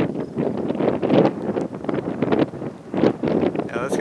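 Gusty wind buffeting the microphone, a rough rushing noise that swells and drops every second or so.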